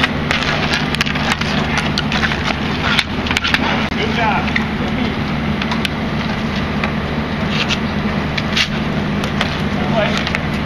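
Hockey sticks clacking on a concrete court and slapping a street hockey ball in repeated sharp taps, over a steady low hum.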